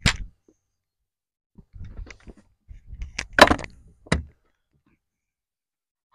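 A few sharp cracks and knocks: a short one at the start, faint ones about two seconds in, the loudest about three and a half seconds in, and a lighter one shortly after.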